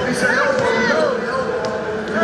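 Basketballs bouncing on a hardwood court, with voices and crowd chatter around.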